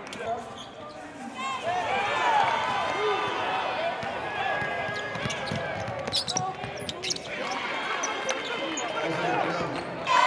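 Basketball game sound in a gym: the ball bouncing on the hardwood court, with a few sharp knocks, under a steady crowd chatter.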